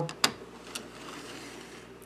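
Two light clicks of a plastic HO-scale model locomotive being handled on the track, set down and pushed along by hand, within the first second, over a faint steady hiss.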